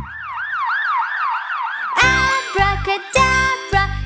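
Cartoon siren sound effect: a fast warbling wail, about four rises and falls a second, that gives way about halfway through to the children's song's music and beat.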